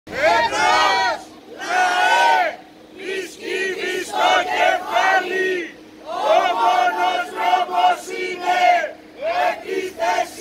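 Protesters chanting slogans in Greek, a series of shouted rhythmic phrases with short pauses between them, led through a megaphone.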